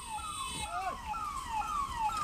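Ambulance siren sounding a fast repeating pattern, each note sweeping down in pitch, about three a second.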